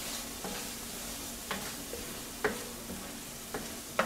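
Chopped tomato and onion with spices sizzling in a stainless steel frying pan as a black spatula stirs it, with a few short scrapes and taps of the spatula on the pan about once a second.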